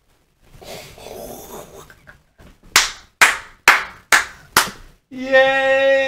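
A person claps their hands five times in quick succession, about two claps a second. Near the end comes a drawn-out, held vocal exclamation.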